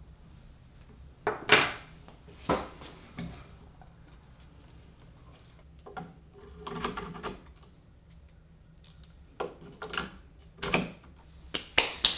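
Small metal guitar tuner parts clicking and clinking as a set of no-line Kluson tuners is fitted into a guitar headstock, with knocks of the wooden neck being handled. A handful of sharp clicks, the loudest about one and a half seconds in, a small cluster a little past the middle, and several more near the end.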